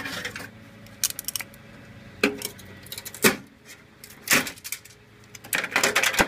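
Handling noise from a RAM module and the open metal PC case: scattered sharp clicks and clattering knocks, a few at a time, with a cluster about a second in, single strikes at about two and three seconds, and a busier run of clatter near the end.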